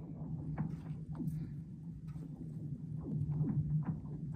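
A steady low hum with faint, scattered ticks and light knocks over it.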